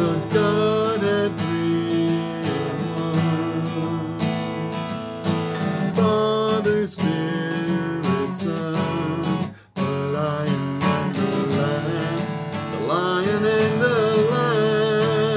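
Acoustic guitar strummed steadily, with a man's voice singing along at times; the playing breaks off for a moment about ten seconds in, then carries on.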